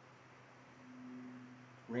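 Faint steady background hum with a single low, flat tone that comes in about half a second in and holds without wavering.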